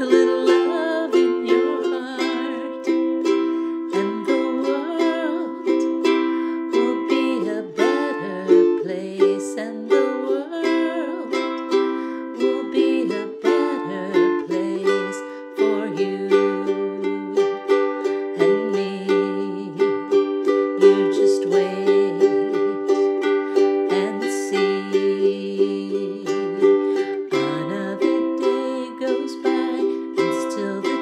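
A KLOS carbon-fibre ukulele strummed in a steady rhythm, playing a changing chord progression.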